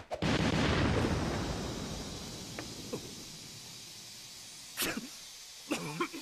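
Anime explosion sound effect: a sudden blast, then a rumble that fades away over about three seconds, as smoke bombs go off. A single sharp crack follows about five seconds in.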